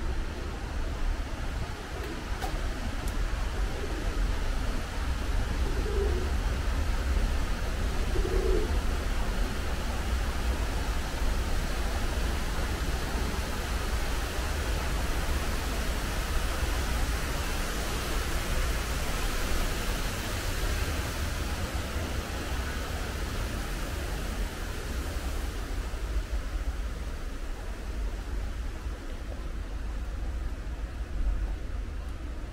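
Steady urban background noise with a low rumble, and a feral pigeon cooing twice, about six and eight seconds in.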